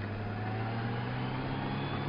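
Touring motorcycle engine running under way, a steady hum whose pitch rises gently as the bike picks up speed out of a curve.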